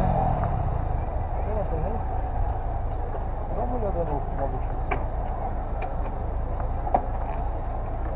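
Steady low vehicle rumble at a roadside, with faint voices in the background and a few light clicks near the end.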